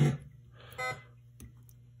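A pitched electronic test sound from a Gottlieb Caveman pinball speech and sound board cuts off just after the start. It is followed by quiet with a short tonal blip and a single faint click.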